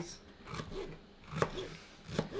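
Kitchen knife slicing a green bell pepper on a plastic cutting board, with one sharp knock of the blade on the board about one and a half seconds in.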